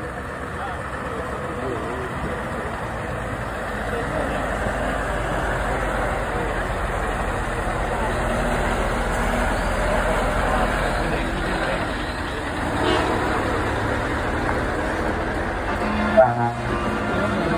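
A Scania truck pulling a trailer drives slowly past at close range. Its diesel engine rumbles steadily and grows louder over about the first ten seconds as it comes near.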